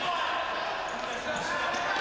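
Game sound of an indoor futsal match: a steady wash of sports-hall noise with the ball being played on the hard court.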